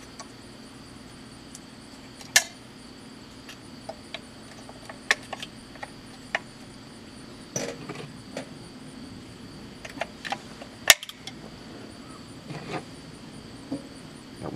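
Scattered sharp plastic clicks and knocks as AA batteries are fitted into the battery compartment of a cheap plastic shooting chronograph, irregular and spread out, with the loudest knock near the end.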